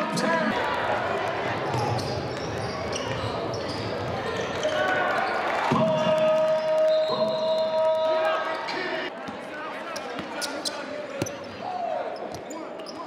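Live basketball game sound in a large gym: a ball bouncing on the hardwood court, with voices from players and the sparse crowd. A held tone runs for about three seconds in the middle, and sharper knocks come in the last few seconds.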